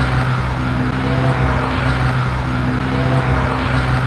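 A loud, steady low drone with a fainter, slowly wavering moan-like tone riding above it, presented as an unexplained groan heard at the grave site.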